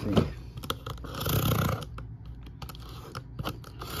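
A box cutter slitting open a cardboard shipping case: the blade scraping and tearing through the tape and cardboard, with a run of sharp clicks and taps.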